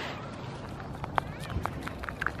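A goat sniffing and snuffling right at the microphone, with a few sharp clicks about a second in as it noses at a peanut held out to it.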